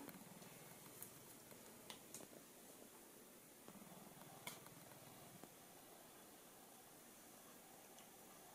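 Near silence: quiet room tone with a few faint soft ticks.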